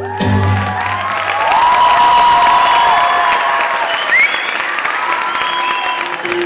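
Music cuts off just at the start, and an audience then claps and cheers, with a few long whistles over the clapping.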